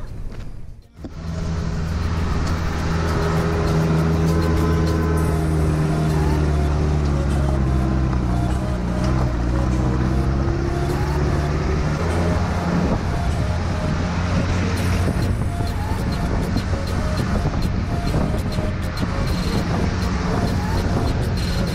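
Off-road 4x4 jeep engine running under load as it climbs a steep, rough gravel track, with road and tyre noise. It comes in about a second in after a brief dip, and its pitch eases down a little before holding steady.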